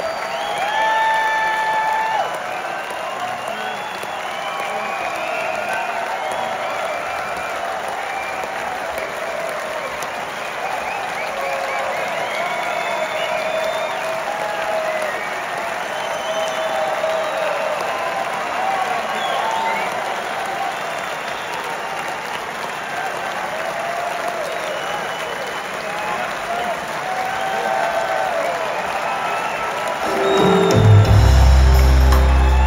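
Large concert audience applauding and cheering steadily, with shouts and whoops rising above the clapping, loudest about a second in.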